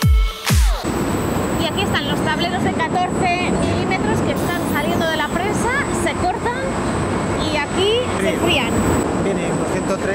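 An electronic dance beat ends about a second in. It gives way to the steady din of an MDF board production line: rollers and the board cooler running, with many short squeals and a thin high whine over it.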